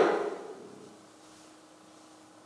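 A man's loud spoken phrase ends and fades in the room's echo over the first half second or so. Then comes a quiet pause, with only a faint steady hum.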